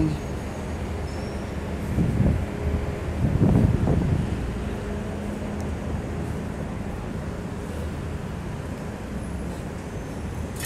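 Downtown street ambience: a steady hum of city traffic, with two louder swells of low rumbling noise about two and three and a half seconds in.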